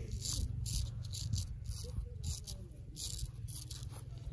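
Straight razor scraping stubble off the jaw and neck in short, quick strokes, about two or three a second.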